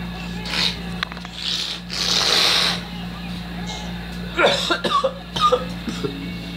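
A man talking in a moving car's cabin over a steady low hum, with short breathy bursts, the longest about two seconds in, and a few spoken words near the end.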